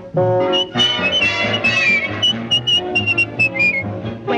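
Orchestral cartoon score playing an upbeat swing tune: a high melody of short notes, with one downward slide, over a steady bass beat.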